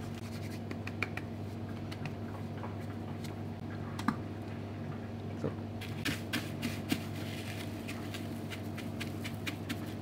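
Hands pressing a ham-and-cheese cutlet into panko breadcrumbs in a stainless steel tray: soft scratching and rustling of crumbs with a few light clicks, busiest about six seconds in, over a steady low hum.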